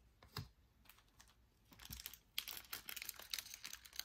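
Plastic trading-card pack wrapper crinkling as it is handled and opened, starting a little over two seconds in and growing louder; a few light clicks of cards being handled before it.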